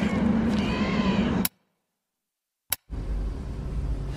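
Radio sound-effects ambience of seabird calls over a steady low hum, cut off dead about one and a half seconds in. After about a second of silence and a single click, a different low, steady background starts.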